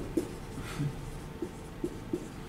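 Dry-erase marker writing on a whiteboard: a few short ticks and scrapes of the marker tip on the board, spaced irregularly.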